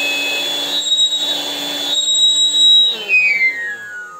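Parkside PKA 20-LI A1 cordless air pump's inflation blower running with a steady hum and a high-pitched whistle from its corrugated hose, whose sharp ribs catch the airflow when the hose is stretched. About three seconds in the blower is switched off, and its whistle and hum slide down in pitch as it winds down.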